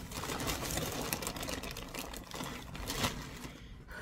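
Close rustling and light clattering of things being handled, a rapid, uneven run of small clicks and scrapes.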